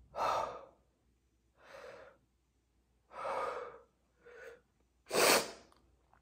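A man panting hard through an open mouth: five loud, breathy gasps about a second apart, the last the loudest. He is trying to cool a mouth burning from scorpion-pepper heat.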